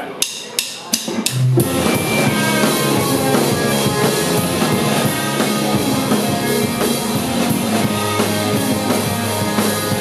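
Live punk rock band starting a song: a few sharp clicks count it in, then drums, distorted electric guitars and bass come in together about a second and a half in and play on at full volume.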